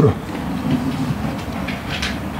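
A steady low hum with a faint hiss, with no clear strokes or changes.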